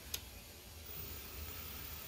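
A single click of a circuit breaker being switched on, followed a little under a second later by a faint, steady, very high-pitched whine as the servo drive powers up, over a low electrical hum.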